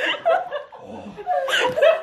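Men laughing and chuckling, with a brief sharp noise about one and a half seconds in.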